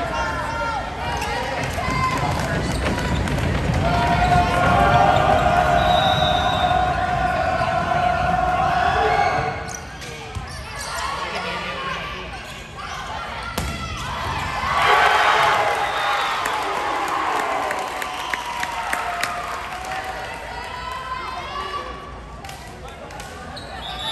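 Volleyball being played in a gymnasium: ball hits and thuds echoing in the hall, mixed with players calling out and spectators shouting, loudest from about four to nine seconds in and again around fifteen seconds.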